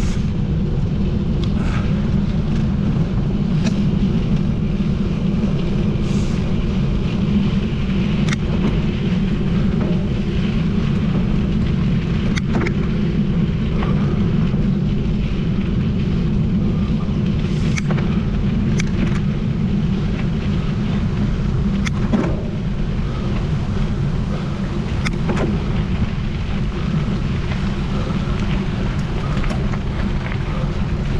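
Wind buffeting a GoPro action camera's microphone, with mountain-bike tyres rumbling over a gravel forest track. Scattered sharp clicks and rattles from the bike run through it.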